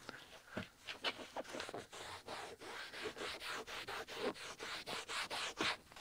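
A trim-coat wipe rubbed by a gloved hand over the textured black plastic of a utility vehicle's door frame, in quick, even scratchy strokes of about four or five a second. The plastic is sun-faded, dried out and chalky.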